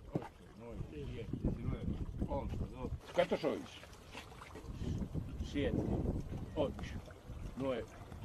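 Men's voices talking indistinctly among a small group, over a low rumble of wind on the microphone.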